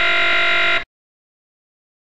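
A loud, harsh buzzer sound effect, one steady buzz of under a second that cuts off suddenly: the game-show 'wrong answer' buzz, marking the claim just made as false.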